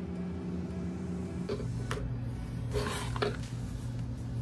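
Cut paper sublimation print being peeled off a sticky cutting mat: a few short rustles and crackles of paper, most of them in the second half, over a steady low background hum.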